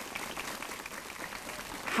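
Audience applause: a dense, even patter of many hands clapping that swells slightly over the two seconds.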